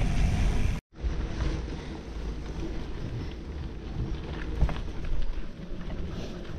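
Mountain bike being ridden on a dirt trail: a steady rumble of wind on the handlebar microphone and tyres rolling over dirt, with scattered small knocks and rattles from the bike. The sound cuts out for an instant about a second in and carries on quieter after.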